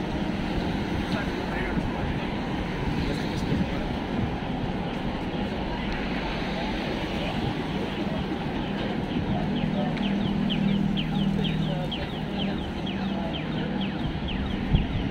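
Busy city street ambience: traffic and passers-by talking. From about halfway in, the audible signal of a pedestrian crossing chirps rapidly, about three to four chirps a second, with a low engine hum for a few seconds under it.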